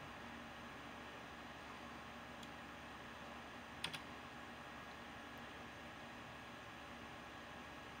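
Quiet room tone: a faint steady hiss with a low hum, broken once about four seconds in by a brief double click.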